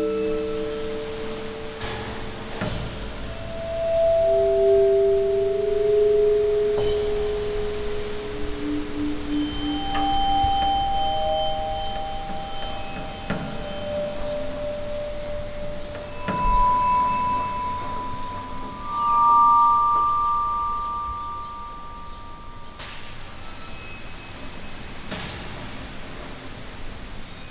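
Slow ambient background music of long held notes that climb in pitch over the passage, with a few brief struck accents.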